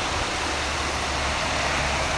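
Steady rushing of flowing river water, with a low rumble underneath.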